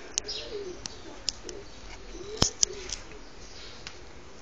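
Birds calling: a low, repeated cooing with some high chirps. A few sharp clicks come through, the loudest about halfway through and another right after it.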